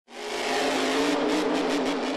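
Grave Digger monster truck's supercharged V8 engine running hard at a steady pitch, fading in at the start.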